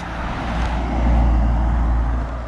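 A road vehicle driving past close by: a low engine and tyre rumble that swells to its loudest about a second in and then starts to fade.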